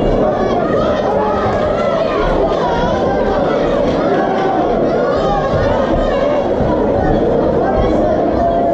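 Spectator crowd in a large hall shouting and talking over one another, a continuous loud babble of many voices with no single clear speaker.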